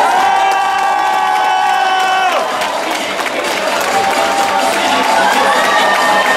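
A crowd of young people cheering and shouting together. It opens with a long drawn-out shout that breaks off after about two seconds, then goes on as a dense mass of cheering, with another held shout rising near the end.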